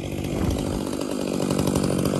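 An engine running steadily at speed, growing a little louder about half a second in and holding there.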